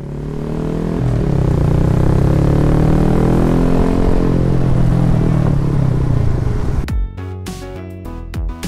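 Small motorcycle engine heard from the bike itself, its pitch rising as it accelerates and then falling as it slows. About seven seconds in, music with a sharp beat cuts in over it.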